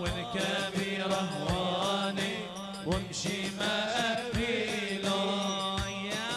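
Chanted Arabic song, with a sung melody over a steady low drone. A deep drum stroke falls about every second and a half.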